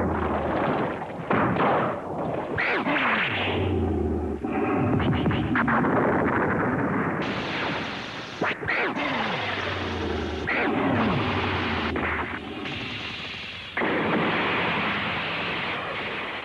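Fight-scene soundtrack of music mixed with blasts and other battle sound effects. It is busy and loud and changes abruptly several times.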